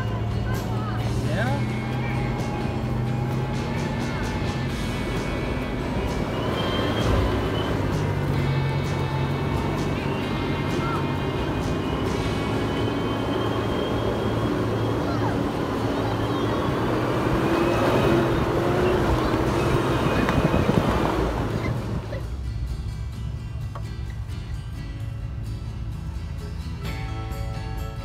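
Toyota 4Runner's engine heard from inside the cab as it works up a trail obstacle, its note rising steadily in the middle, over background music. About 22 s in the engine sound cuts away and music alone carries on.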